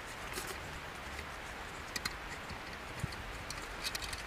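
M8 hand tap turned in a tap wrench, cutting threads into the governor hole of a Honda GX160's aluminium crankcase: faint, irregular metallic clicks and ticks over a low background hiss.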